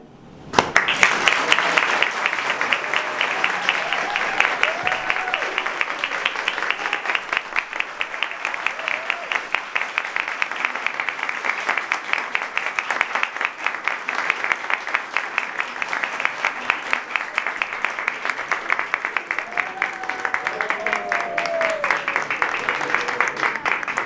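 Audience applauding a choir's finished performance, the clapping starting about half a second in and running on steadily and densely. A few voices call out briefly over the applause a few seconds in and again near the end.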